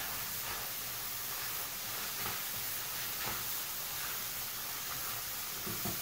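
Soaked rice and onion frying in margarine and oil in a pot, a soft, steady sizzle, with two faint ticks near the middle. This is the toasting stage before the broth is added, which keeps the grains separate.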